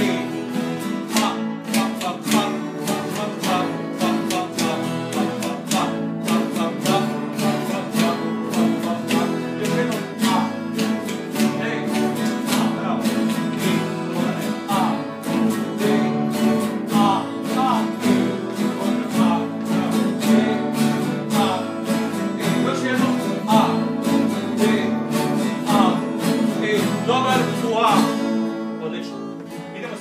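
Several acoustic and nylon-string classical guitars strummed together in unison, repeating one rhythmic strumming pattern of chords as a group practice exercise. The strumming thins out and fades near the end.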